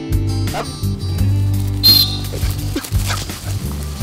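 Background acoustic guitar music, with a dog yipping and whining over it. A short shrill note sounds about two seconds in.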